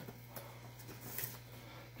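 Quiet room tone with a steady low hum and a few faint clicks and rustles of hands handling a cardboard box.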